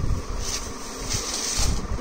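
Rustling and handling noise as a saree's fabric and a paper wrapper are moved about, with a low rumble from the handling and short bursts of hiss about half a second in and again past the middle.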